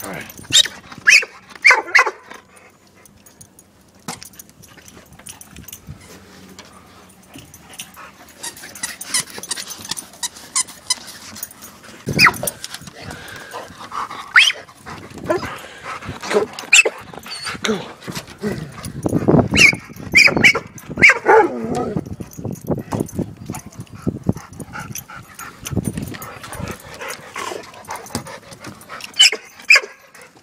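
A dog barking in short bursts at intervals, with quieter stretches between.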